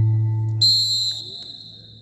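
Low buzzer tone fading away, with a shrill referee's whistle blown briefly about half a second in: the signal at the end of a wrestling bout.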